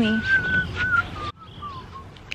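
A person whistling a few notes: a clear high tone held for about half a second, then stepping down in pitch. About two-thirds of the way through it breaks off abruptly, and a few fainter, shorter falling whistles follow.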